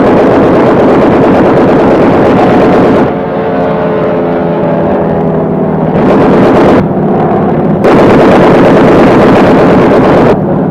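Battle sound of an air attack: loud dense rumble of gunfire and blasts, cutting abruptly about three seconds in to a steady, pitched aircraft engine drone. It breaks back into loud blasts and rumble after about six seconds and again near the end.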